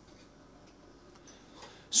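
Faint handling sounds of hands kneading sticky pizza dough on a countertop, with a few soft, light ticks, close to near silence.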